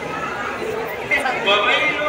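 Large crowd chattering, many voices talking at once with no single one standing out. Some nearer voices grow louder in the second half.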